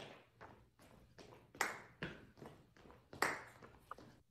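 Shoes stepping and tapping on a hardwood floor as two people dance a grapevine step: a run of short knocks, with the sharpest about every second and a half and lighter steps between.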